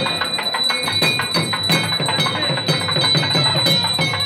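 Loud temple festival music: fast, dense drumming with a bell ringing steadily over it.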